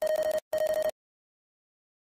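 Two short bursts of an electronic, telephone-like ringing tone, one right after the other, then silence.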